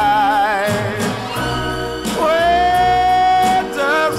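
Music from a 1960s soul single: a voice holds long notes with a wide, wavering vibrato over the backing band.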